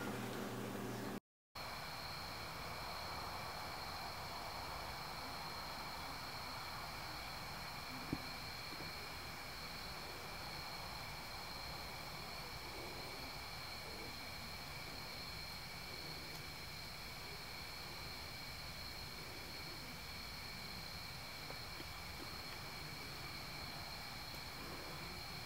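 Steady low hiss with a faint, constant high-pitched whine. The sound drops out briefly just after a second in, and there is one small click about eight seconds in.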